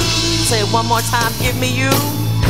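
Gospel praise song: women's voices singing quick melodic runs over steady keyboard accompaniment.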